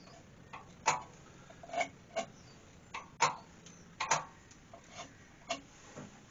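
Sharp clicks and short scratchy strokes at uneven intervals, roughly one a second. They come from a pen marking lines on the rim of an ash bowl on the lathe, and from the bowl being turned and locked segment by segment on the lathe's 24-position indexing plate.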